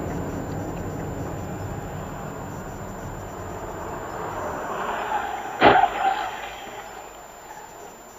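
Steady road and engine noise heard inside a moving car, slowly fading, with one sharp bang about five and a half seconds in followed by a short ring.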